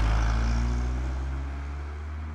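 A vehicle engine's low, steady hum that slowly fades away.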